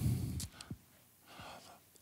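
A man breathes out audibly into a handheld microphone right after he stops talking. A small click follows, then a faint breath shortly before he speaks again.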